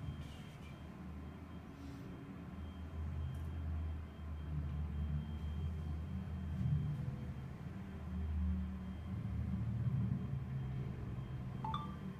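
Low rumble from the Star Tours motion-simulator hall, swelling and fading every second or two, over a faint steady high-pitched whine. A brief chirp comes near the end.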